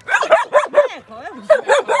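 A large shaggy dog barking in quick succession: about four barks, a brief pause, then about four more.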